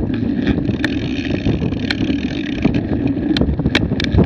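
Wind rumbling on the microphone of an action camera moving along with a mountain bike on a grassy trail, with a handful of sharp clicks and rattles scattered through it.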